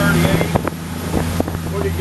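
The engine of a 34 Luhrs sportfishing boat droning steadily while the boat runs underway, with a few short knocks in the middle.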